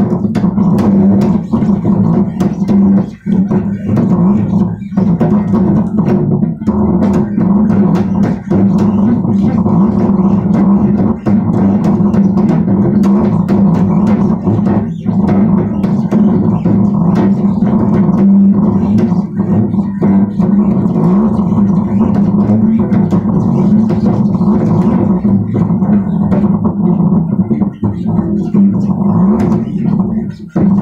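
Bass guitar played continuously, a run of plucked notes with only a few brief breaks.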